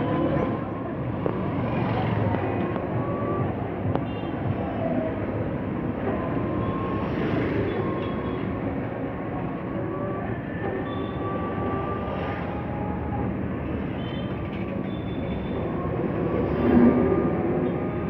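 Busy street traffic heard from a moving rickshaw: a steady rumble of wheels and passing vehicles, with faint short high tones cropping up every second or two.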